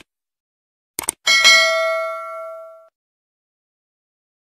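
Mouse-click sound effects, then a single bell ding about a second in that rings out for about a second and a half: the subscribe-and-notification-bell sound effect.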